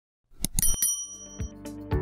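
Short click sound effects followed by a bright bell ding, the subscribe-click and notification-bell jingle of a channel intro. Music with a steady beat, about two beats a second, starts about a second and a half in.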